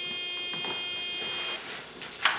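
A steady electronic tone, held and then stopping about a second and a half in, from studio photography equipment during an exposure just after a spoken count of three.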